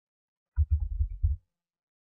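Dead silence, then about half a second in a short, muffled burst of a man's low voice, a mumbled word under a second long, and silence again.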